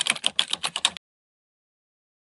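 Typing sound effect: a quick run of keystroke clicks, about ten a second, that stops abruptly about a second in.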